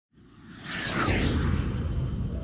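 Whoosh sound effect of an animated logo intro, swelling in from silence with a falling sweep about a second in over a deep rumble.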